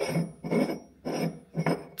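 Steel cup-type oil filter wrench handled and turned in the hand, giving light metallic clinks and rubs in three short bursts.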